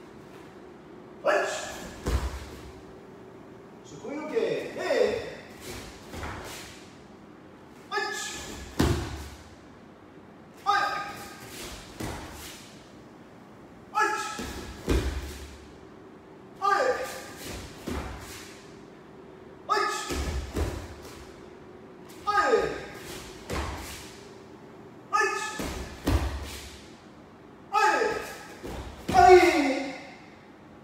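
Bare feet thudding and stamping on dojo mats, with sharp snaps from the gi and a short loud shout or forced breath on each technique, repeated about every three seconds through a fast karate combination drill of turns and punches.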